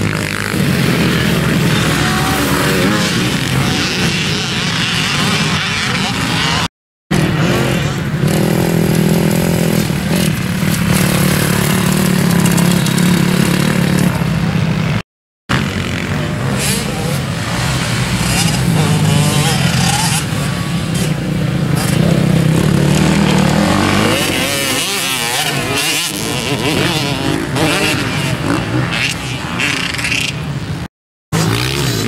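Dirt bike engines racing on a motocross track, revving up and down as the bikes pass, with two brief dropouts where the sound cuts out.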